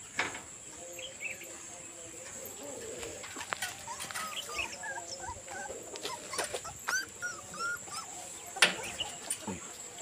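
Newborn puppies whimpering and squeaking in many short, high-pitched cries while nursing, with a few sharp knocks, the loudest near the end. A steady high insect trill runs underneath.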